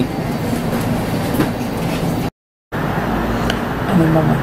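A small motor running steadily with a low whirring hum, broken by a brief total dropout a little past halfway.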